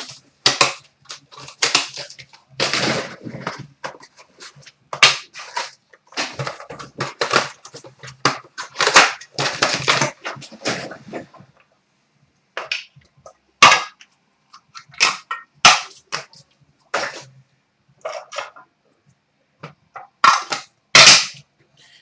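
A sealed hockey card box being torn open and unpacked by hand: quick crackling tears and rustles of wrapping and cardboard, busiest in the first half, then spaced sharp snaps and crinkles after a short pause near the middle.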